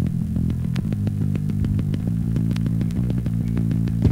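Norwegian hardcore punk recording: a bass guitar plays a quick picked riff alone, with a clicky attack on each note about four times a second.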